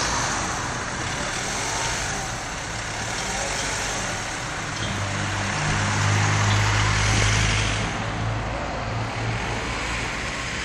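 Town-centre road traffic, with a motor vehicle's engine hum swelling as it passes close, loudest about six to eight seconds in, then fading.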